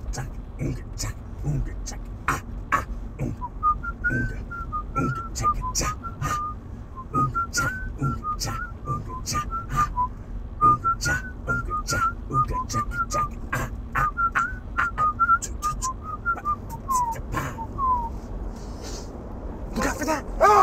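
A whistled tune of short notes over a sparse clicking beat; the whistling comes in a few seconds in and ends with two falling slides near the end.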